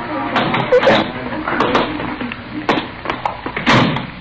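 Old-time radio drama sound track: indistinct voices and sound effects, with a few sharp knocks and a louder noisy burst near the end.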